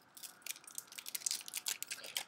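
Plastic packaging on an eyeliner pencil crinkling in a rapid run of small crackles and clicks as it is peeled off and handled.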